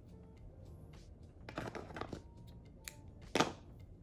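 Soft rustling handling noises of craft thread and ribbon, with a couple of brief louder rustles in the second half, over faint background music.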